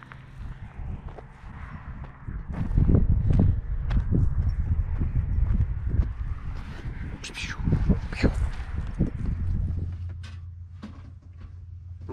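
Wind buffeting the microphone in a heavy low rumble, with a dog's paws thudding on dry ground as it runs up close. Near the end this gives way to a steady low hum.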